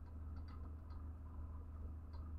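A few faint ticks from a computer mouse's scroll wheel as a web page is scrolled, over a low steady hum.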